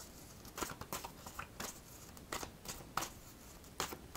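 A deck of tarot cards being handled and shuffled by hand: faint, irregular soft clicks and flicks.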